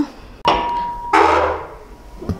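A metal barrel bolt on a door is slid back with a sharp clank and a brief metallic ring, then the door scrapes as it is pulled open.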